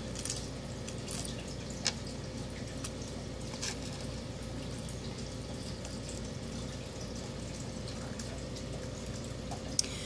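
Silver jewelry pieces being set down on a pile on a small digital scale: a few sparse light clicks of metal on metal, the sharpest about two seconds in, over a steady low hum.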